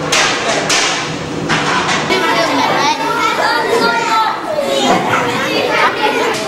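Many children chattering at once in a busy school dining hall, with some sharp clattering near the start.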